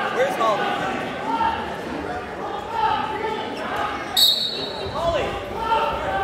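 Voices of spectators talking in a gymnasium, with a short, high referee's whistle blast a little past four seconds in that starts the wrestling bout.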